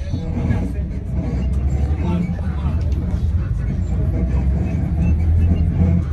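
Steady low rumble of a road vehicle driving, heard from inside, with indistinct voices talking over it.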